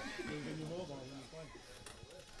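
Faint background talk from a few voices, low under the broadcast, with no clear event standing out.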